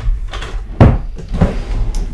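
Drawers of a white drawer unit being slid shut and pulled open, giving three knocks, the loudest a little before halfway.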